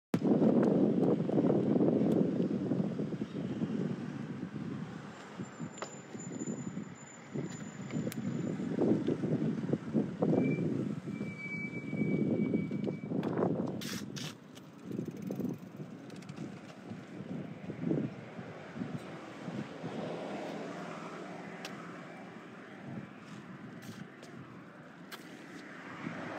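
Wind buffeting the microphone of a phone carried on a moving bicycle: an uneven, gusting rumble, loudest in the first few seconds, with a few sharp clicks partway through.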